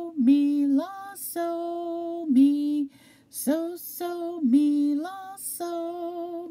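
A woman singing solfège syllables unaccompanied, the so-mi-la pattern 'so, so, mi, la, so, mi', in two phrases with a short breath between.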